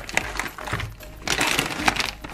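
Grocery packaging and a shopping bag rustling and crinkling as items are handled, with a couple of sharp clicks of containers knocking against each other.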